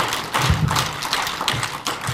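An audience clapping: a dense, uneven run of many hand claps.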